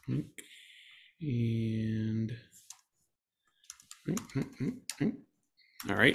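Computer keyboard keys clicking in short runs while a markdown file is being edited, with a man's voice making short sounds without clear words and one steady hum lasting about a second.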